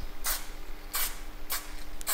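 Aerosol spray can of Plasti Dip giving three short hissing bursts about half a second apart, laying a light first coat.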